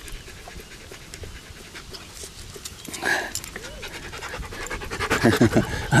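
A dog panting close by, quick steady breaths while its belly is rubbed, with fur rustling under the hand.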